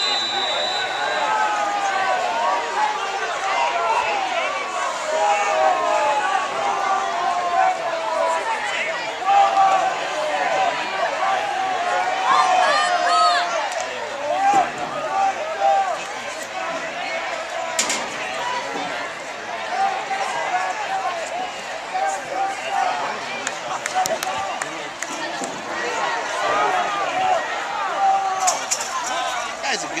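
Football crowd: many voices talking and shouting at once, with a few sharp claps or knocks in the middle.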